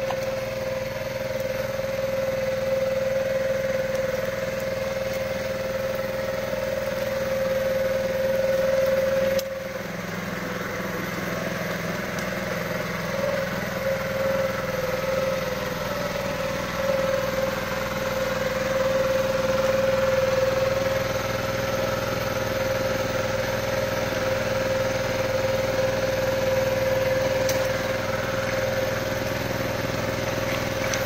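A small engine running steadily at constant speed: an even, unbroken hum that holds one pitch.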